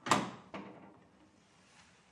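Wooden front door being shut and latched: a sharp clack at the start, then a second click about half a second later.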